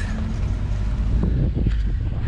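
Open-sided shuttle vehicle running on the road, heard from its passenger bench: a steady low rumble with wind on the microphone, and a few short rattles about one and a half seconds in.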